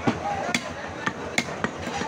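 A heavy butcher's cleaver chopping beef on a wooden log chopping block: about five sharp, irregularly spaced chops in two seconds.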